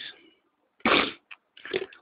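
A short throaty vocal noise from a man pausing mid-sentence, like a grunt or hard breath, about a second in, followed by a small click and faint mumbling.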